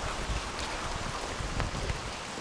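Heavy rain falling steadily, an even hiss with faint scattered drop ticks and low rumbling underneath.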